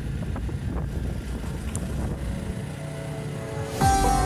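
Wind rumbling on the microphone over a Jawa Perak motorcycle running along the road. Music comes in just before the end.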